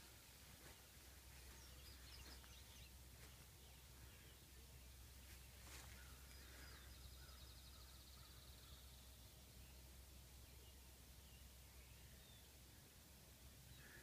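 Near silence with faint birdsong: scattered chirps, and one trill from about six to eight and a half seconds in.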